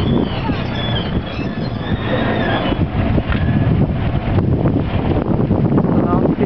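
Strong wind buffeting the microphone, a loud, gusting rumble. Voices are faint in the background.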